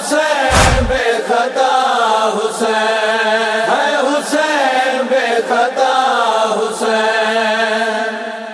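Voices chanting a noha lament refrain in chorus, sustained and wavering, with one deep thump near the start.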